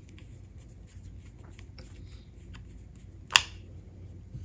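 Faint small clicks of a flat-head screwdriver turning a small screw back into a sewing machine's wiring plug block, with one sharp click about three-quarters of the way through.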